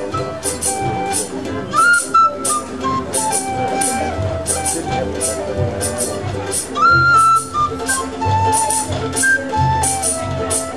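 Acoustic string band playing an instrumental passage: a penny whistle melody with upward-sliding notes over strummed guitars and banjo, with a steady rattling tambourine beat, about three strokes a second.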